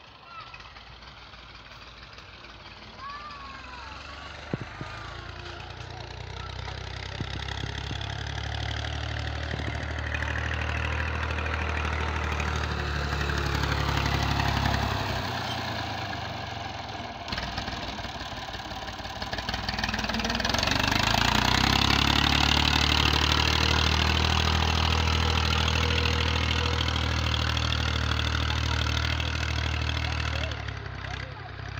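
A small farm tractor's diesel engine running steadily under load as it pulls a tillage implement through the soil. It grows louder over the first several seconds, eases briefly past the middle, then runs loud and steady through the second half.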